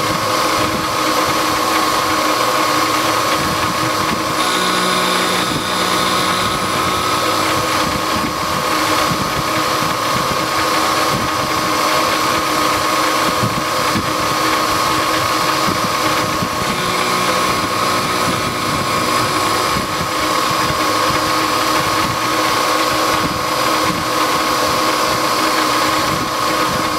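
Milling machine spindle and end mill cutting the profile of a model-engine connecting rod: a steady, high machining whine. Its tone shifts briefly about five seconds in and again around seventeen seconds.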